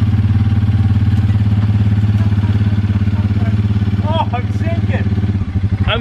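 ATV's single engine running steadily at a constant speed, its note changing just before the end. A brief voice is heard about four seconds in.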